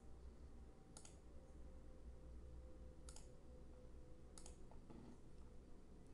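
Near silence with three faint computer mouse clicks, about one, three and four and a half seconds in.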